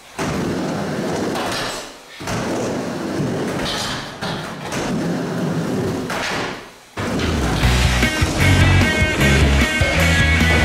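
Skateboard wheels rolling across a wooden mini ramp in three runs, broken by short dips, with a few knocks of the board. About seven seconds in, rock music with a heavy beat comes in and becomes the loudest sound.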